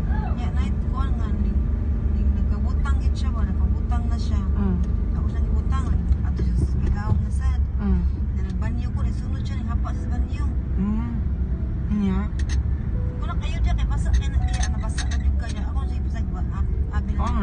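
Steady low rumble of a car driving in traffic, heard from inside the cabin, with people's voices talking over it.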